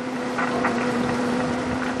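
Fishing boat's engine running with a steady hum under way, over a steady rush of water along the hull.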